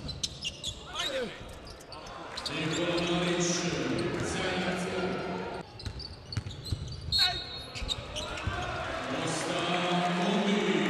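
Basketball bouncing on a hardwood court during live play in a large arena, with short repeated thuds and sneaker squeaks, over voices from the stands.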